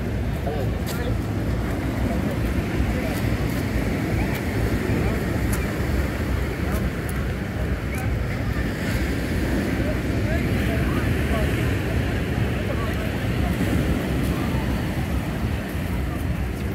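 Indistinct chatter of people walking and standing nearby, over a steady low rumble.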